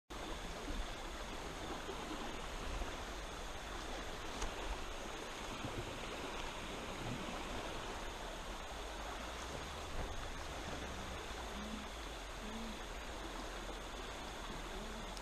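River water flowing steadily, an even rushing hiss.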